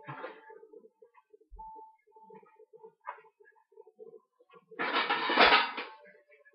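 Clatter of a baking tray being taken out and handled: a loud, dense rattle lasting about a second near the end, after faint scattered kitchen knocks.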